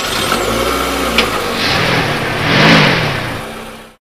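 Car engine accelerating as the car drives off, swelling to its loudest a little before three seconds in and then fading away near the end.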